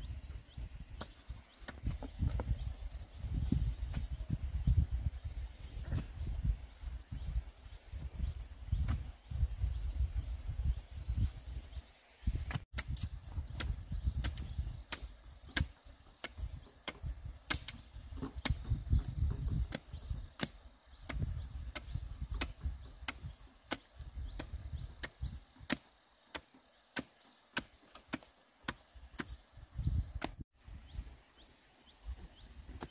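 A machete striking bamboo over and over, sharp, evenly spaced chopping knocks about one and a half a second, while a bamboo fence is being built. Before that, a low rumble with a few faint taps.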